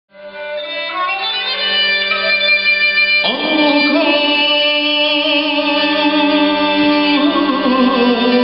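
Armenian kamancha (spike fiddle) and viola playing an Armenian folk melody over a steady held low note, fading in at the start. A new line with a wide vibrato comes in about three seconds in.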